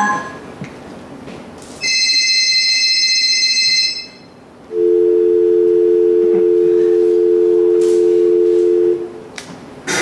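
Electronic telephone-style tones in a dance-routine soundtrack played over speakers: a steady high beep for about two seconds, then after a short gap a steady low two-note tone, like a telephone dial tone, held for about four seconds.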